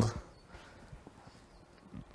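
A pause in a man's speech: his last word trails off at the start, then faint room tone with a few soft clicks.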